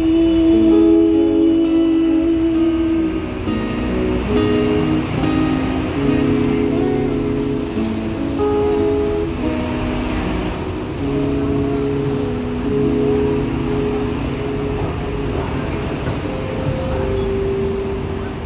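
Two acoustic guitars playing an instrumental outro of a slow ballad, with held chords and picked single notes.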